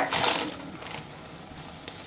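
Parchment paper crinkling under a stainless steel pot lid as the lid is pressed down to seal the pot and keep the steam in. The crinkle is loudest in the first half second, then fades to faint rustles and light clicks.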